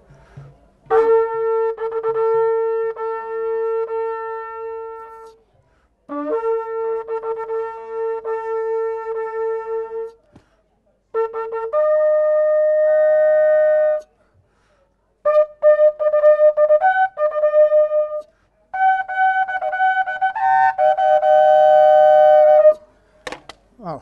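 A long spiralled greater kudu horn shofar blown in a series of calls. It opens with two long steady blasts on one low note, then shorter notes and a run of quick short blasts on a higher note, and ends with a long held note higher still.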